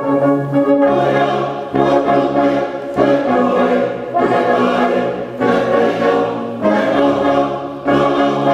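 Brass band of cornets, tenor horns, euphoniums and tubas playing a slow hymn in full held chords that change about once a second, with a congregation singing along.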